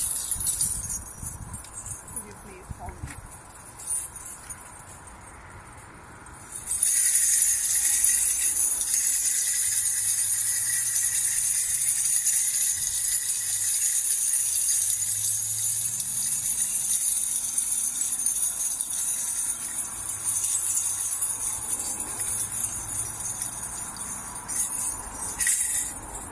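A hand-held cluster of small metal bells on a handle, shaken continuously in a steady, bright jingling. It starts about seven seconds in and stops just before the end.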